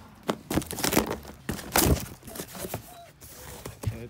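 Cardboard box being opened by hand: its flaps are pulled back and the crumpled packing paper inside rustles. The sound is a run of irregular scrapes and crinkles.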